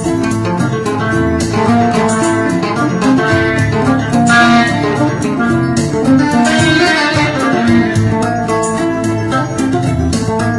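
Instrumental passage of live West African griot band music: quick plucked guitar lines over bass and a steady percussion beat.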